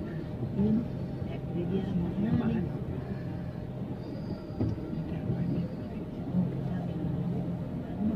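Busy street-market ambience: scattered voices of passers-by over the steady hum of a vehicle engine running nearby.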